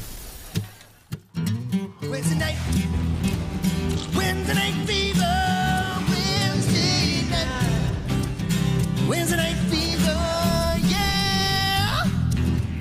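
A band starts playing a song after a couple of opening strums, with guitars and a singing voice carrying the tune from about four seconds in.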